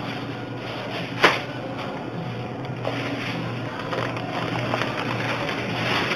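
Thin plastic shopping bag rustling as it is handled at a counter, with one sharp knock about a second in, over a steady low hum.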